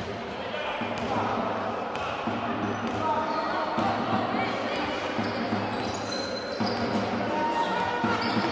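A basketball bouncing on a wooden court as a player dribbles it up the floor, a short sharp bounce every so often, with voices in the background.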